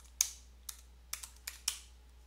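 Computer keyboard typing: about half a dozen separate keystrokes, unevenly spaced, as a web address is typed into a browser's address bar.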